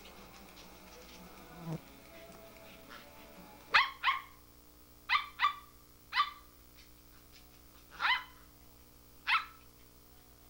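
Small dog barking during play: seven short, high-pitched barks that start about four seconds in, coming as two quick pairs and then three single barks spaced a second or two apart.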